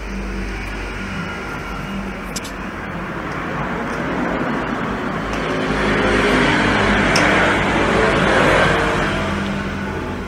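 Background road-traffic noise with a low rumble, swelling from about four seconds in to a peak around seven to eight seconds and then easing, as a vehicle passes. A couple of faint clicks of handling.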